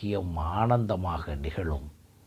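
A man speaking in a lecture, his voice stopping just before the end.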